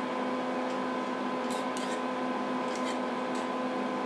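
Steady electrical hum of running laboratory equipment, with a few faint light ticks of a stirrer scraping inside a glass test tube.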